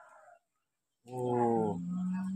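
A man's drawn-out exclamation of amazement, "โอ้โห" ("wow"), starting about a second in and stepping up in pitch partway through.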